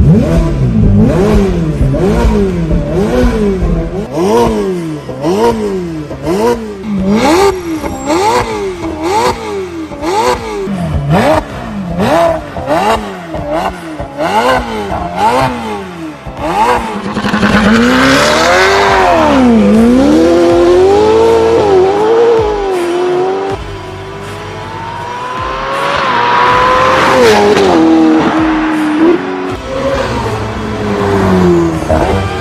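Turbocharged V8 sports-car engine revved again and again. Its pitch rises and falls about once a second for the first half, then climbs and drops in a few longer, wider sweeps.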